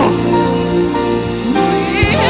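Live gospel band music between sung phrases: sustained keyboard chords over a steady bass, with a voice sliding up into the next phrase near the end.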